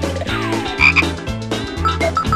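Cartoon theme music with a regular bass beat, overlaid with comic croaking sound effects for an animated frog character, including a short falling glide and a couple of quick chirpy blips around the middle.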